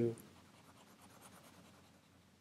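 Faint scratchy scribbling of quick shading strokes, as of a pencil on paper.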